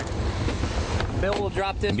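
Suzuki outboard motors running with a steady low hum under wind and water noise on the microphone, with a man's voice starting about a second and a half in.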